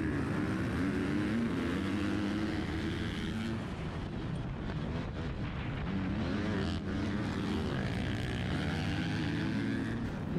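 Motocross bikes racing off the start, led by the rider's own KTM dirt bike engine heard up close, revving hard and shifting up, its pitch climbing and dropping repeatedly, with the other bikes in the pack running around it.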